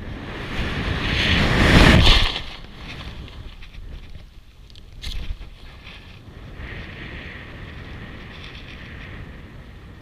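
Rushing wind over a BASE jumper's camera microphone in freefall, building loud for about two seconds and then dropping off suddenly as the parachute opens. A brief knock comes about five seconds in, and the air then rushes steadily and more quietly under the open canopy.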